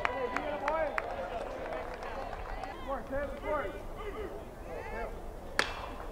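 Ballpark background of scattered, indistinct voices from the stands and field. Near the end a single sharp pop, a pitch smacking into the catcher's mitt.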